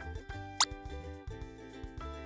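A single quick, rising 'plop' sound effect about half a second in, over background music with a steady beat.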